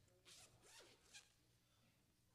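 Paper rustling at the lectern: pages or loose sheets being handled, three short faint rustles in the first second or so.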